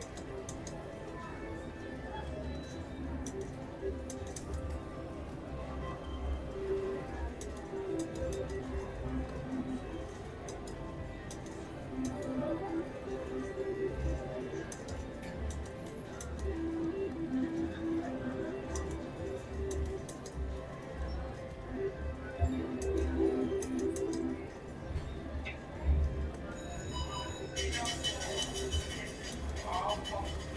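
Casino floor ambience, background music and the chatter of other players, over which a three-reel mechanical slot machine is spun several times, its reels clicking as they spin and stop. A bright, busy jingle rises near the end.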